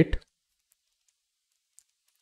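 The end of a spoken word, then near silence broken by a few faint clicks from a stylus tapping on a pen tablet while writing.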